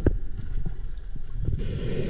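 Underwater sound through a diving camera: a low, irregular rumble of flowing water and scuba bubbles, a sharp knock at the very start, and a regulator hiss from about one and a half seconds in.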